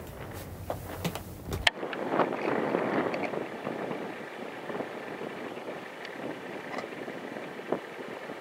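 Wind rushing over the microphone outdoors, with a low rumble in the first second and a half that cuts off suddenly, leaving a steady rushing hiss that swells a little just after the change.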